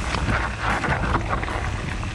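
Downhill mountain bike rolling fast over a rocky gravel trail: tyres crunching on loose stones with a dense clatter of short knocks from the bike, and wind buffeting the microphone.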